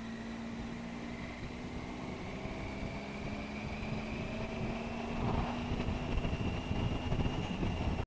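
Triumph Tiger 800 XRx's three-cylinder engine running at a steady cruise, its note edging up slightly in the second half, under rushing wind noise on the bike-mounted microphone that grows louder and gustier from about five seconds in.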